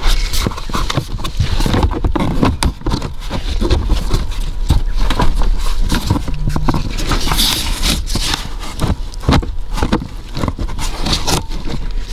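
Hard plastic under-glovebox trim panel knocking, clicking and scraping against the dashboard as it is pushed and wiggled up to seat its rear lugs: many irregular taps and knocks.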